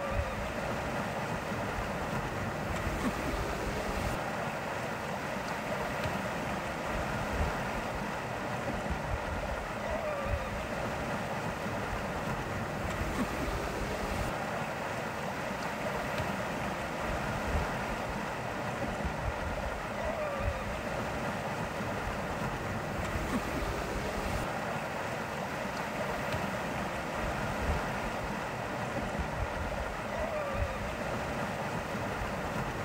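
Steady rush of water and wind from a sailboat under way, with a brief louder surge of water about every three seconds.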